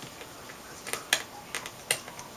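Four small, sharp clicks from a hand tool working at the edge of an LCD panel's metal frame. The loudest comes about a second in and another just before the end.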